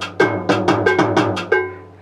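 Roland Octapad SPD-30 playing back a timbales-solo phrase loop: a quick, even run of ringing timbale strikes, about six a second, that stops near the end.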